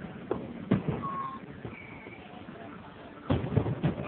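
Aerial fireworks shells bursting some way off: two sharp bangs in the first second, the second one louder, then a quick run of several bangs in the last second.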